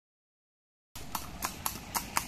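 A horse's hooves clip-clopping in an even rhythm, about four strikes a quarter-second apart, starting about a second in after silence.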